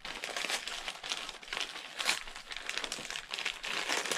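Wrapping paper crinkling and tearing as a small wrapped gift is unwrapped by hand, in an irregular run of crackles.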